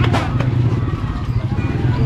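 Small motorcycle engine of a tricycle running steadily, a low, fast-pulsing hum.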